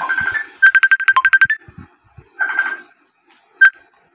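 A fast run of about ten short electronic beeps at one pitch, followed about a second later by a brief burst of the same tone and then a single short beep near the end.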